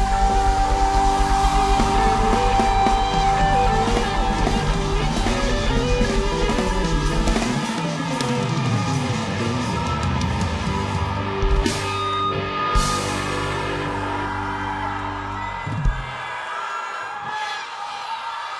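Live pop band playing: electric guitar and drum kit, with a long held note over the first few seconds. The band's playing cuts off about two seconds before the end.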